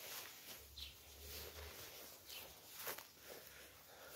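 Very quiet: faint footsteps on grass and soft rustles from the handheld camera moving round the tent, with a low rumble for about a second near the start.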